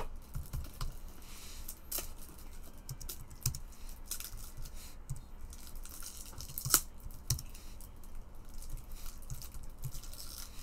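Irregular light clicks and taps of typing on a computer keyboard, with one sharper click about seven seconds in.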